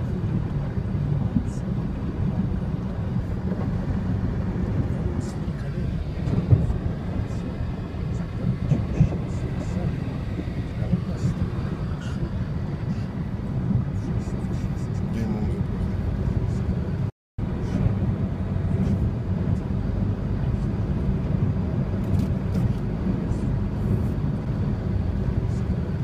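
Low, steady rumble of a car driving through floodwater, heard from inside the cabin, with scattered light ticks of rain on the windshield. The sound cuts out completely for a moment about seventeen seconds in.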